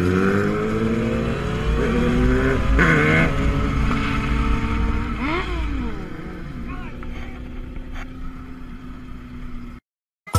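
Sport motorcycle engines running and accelerating in a group, with pitches rising, and one quick rev up and back down about five seconds in. Heard from a bike-mounted camera, with wind rushing over the microphone through the first half. The sound cuts off abruptly near the end.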